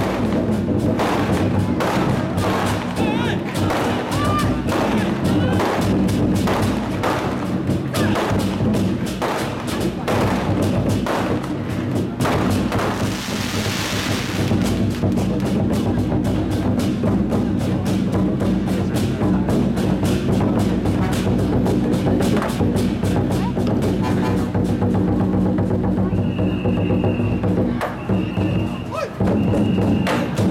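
Large Chinese war drums (zhangu), red barrel drums played with wooden sticks by a drum troupe, beaten in a dense, unbroken rhythm of strokes. A brief crashing wash sounds about halfway through, and short high steady tones repeat near the end.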